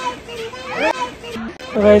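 Voices only: young children talking and exclaiming, with a man's voice starting to speak near the end.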